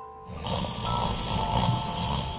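A man snoring: one long, rough snore starting about half a second in. Soft chiming background music with held notes plays under it.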